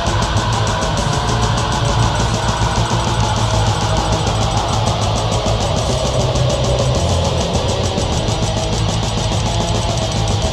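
Black metal with heavily distorted electric guitars over a rapid, even beat, dense and unbroken.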